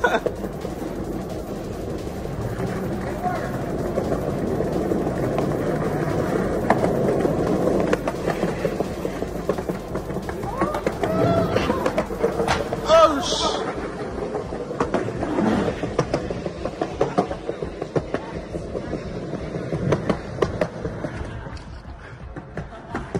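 Skateboard wheels rolling on a concrete sidewalk, a steady rumble with scattered clacks. Voices break in with laughing and shouting about eleven to thirteen seconds in.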